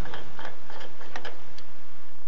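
Diesel car's screw-on fuel filler cap being unscrewed, with a series of light clicks as it turns and a slight hiss as pressure in the tank vents. This is a normal sound.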